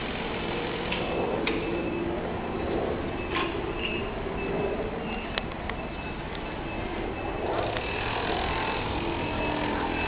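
Steady city noise heard from high above: a hum of distant traffic mixed with wind on the microphone, with a few faint clicks.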